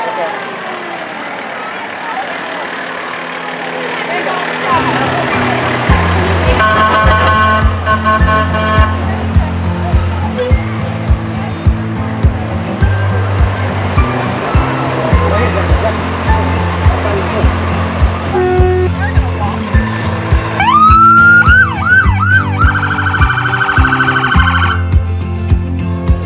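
Music with a heavy bass beat starts about five seconds in, over street and crowd noise. Near the end an emergency vehicle siren gives several rising whoops, then a fast warbling yelp for about two seconds.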